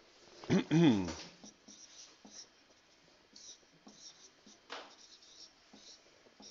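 A man coughs sharply, about half a second to a second in. Then comes the faint, intermittent scratching of a dry-erase marker writing on a whiteboard.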